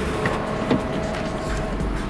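Car door handle pulled and the door latch clicking open, followed by a low rumble near the end as the car is entered, under steady background music.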